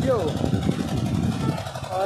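A generator engine running steadily with a low rumble; it powers the motor that sends a trickle of water through a pipe. A brief bit of a man's voice trails off at the start.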